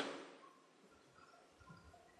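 Near silence: faint room tone, with the end of a man's spoken word fading out at the very start.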